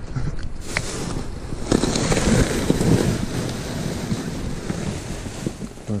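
Wind buffeting the camera microphone, mixed with rustling and a sharp knock about a second in as the dumpster lid and trash bags are handled.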